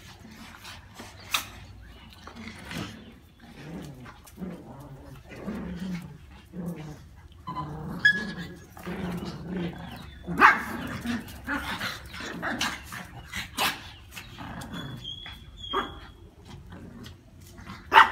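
A pack of small dogs, Brussels Griffons among them, play-fighting, with growls and a few sharp barks, the loudest about ten seconds in and at the end.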